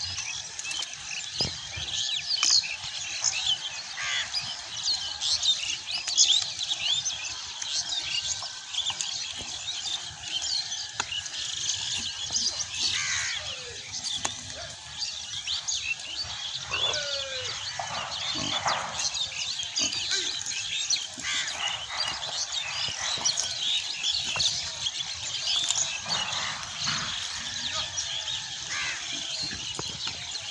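Many small birds chirping and twittering without a break over a steady outdoor hiss, with a few lower, sliding calls in the middle stretch.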